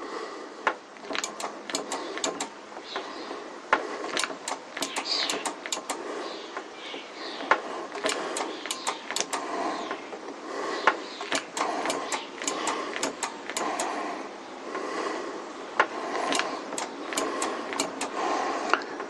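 Irregular clicks and small knocks from hand work on a motorcycle's front brake during bleeding: the handlebar brake lever being pumped and a spanner on the caliper's bleed nipple, several clicks a second at times.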